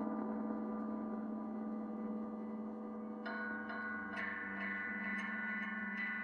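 Drone-noise from a prepared electric guitar run through effects pedals: a steady low hum under layered, ringing overtones. About three seconds in, a cluster of higher metallic ringing tones comes in sharply, with more attacks a second later and faint clicks.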